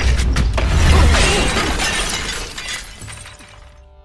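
Film fight-scene sound effects: a deep rumble with sharp cracking and shattering over music, dying away over the last two seconds.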